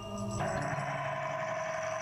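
Background music: a steady held chord that swells in about half a second in.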